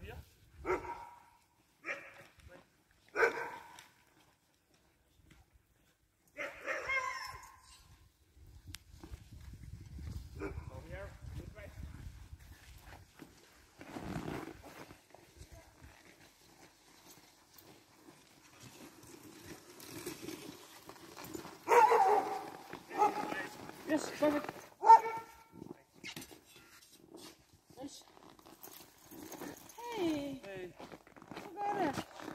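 Sled dogs barking in short bursts mixed with people's voices, the loudest run of barking and talk coming past the middle.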